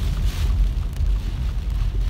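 Inside a car moving through heavy rain: a steady low road and engine rumble with the hiss of rain and water on the car.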